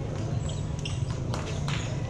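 Basketball game court noise: crowd chatter over a steady low rumble, with two sharp knocks about one and a half seconds in and a few short high chirps.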